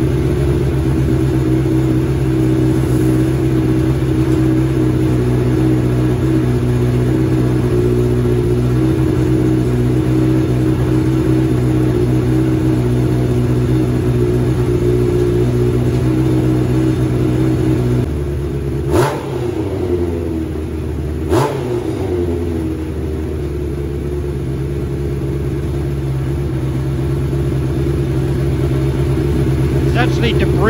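Suzuki inline-four motorcycle engine running at a steady, fast idle through an aftermarket silencer. About two-thirds of the way in it settles a little lower, and the throttle is blipped twice, a couple of seconds apart. The bike lift's quick-attach pins rattle along with the vibration, and the engine runs on all cylinders while it burns oil and carbon out of the oil-soaked silencer.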